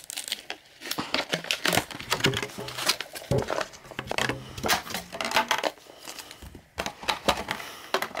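Plastic packaging crinkling and crackling as it is handled and pulled open, in a dense, irregular run of crackles with a short lull near the end.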